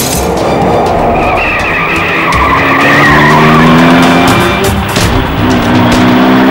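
Tyres screeching for a couple of seconds, then a heavy truck engine revving, its pitch slowly rising, over dramatic background music.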